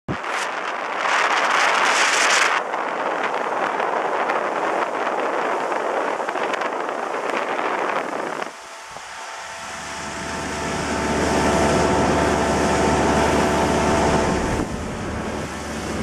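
Motorboat under way on a lake, with wind on the microphone and rushing water noise for the first half. After a brief dip about eight and a half seconds in, the engine's steady drone comes through under the wind.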